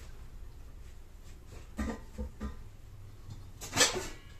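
Kitchenware being handled: three light knocks about two seconds in, then a louder clatter near the end that rings briefly.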